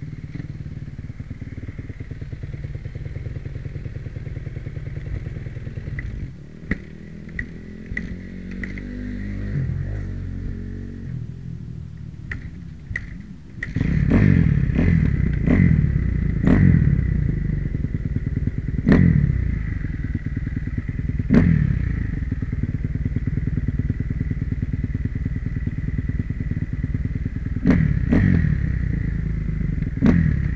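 A 2009 Kawasaki KX250F's four-stroke single-cylinder engine idling, with a few sharp clicks, then from about fourteen seconds in running louder with repeated quick throttle blips as the bike moves off.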